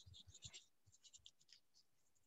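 Near silence, with a few faint, scattered clicks and scratches.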